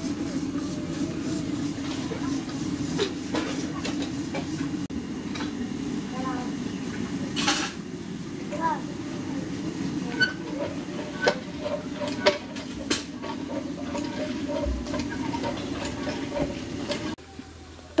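Flour being mixed by hand with water into batter in a large aluminium pot, with scattered clicks and knocks of a steel bowl and hands against the pot. A steady low hum runs underneath and stops about a second before the end.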